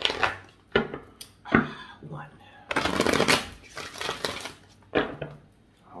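Tarot cards being shuffled by hand: a few sharp clicks of the cards early on, then a dense rustling shuffle of about two seconds in the middle, and another click near the end.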